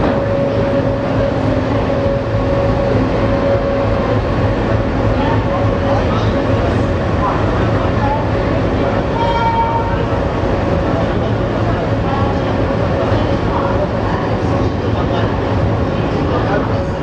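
Passenger train coach of the 14218 Unchahar Express rolling slowly along a station platform as it arrives: a steady rumble of wheels on rail with a steady tone running above it.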